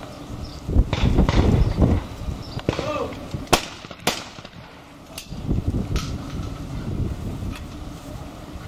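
Distant shotgun shots from clay-target shooting: a sharp pair about half a second apart near the middle, then a few fainter single shots.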